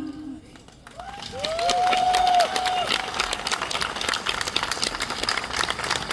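A woman's held sung note ends as a song finishes; after a brief hush, a live audience breaks into applause, with a few whooping cheers as the clapping swells.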